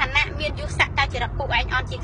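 A woman speaking quickly and without pause, over a steady low rumble inside a car.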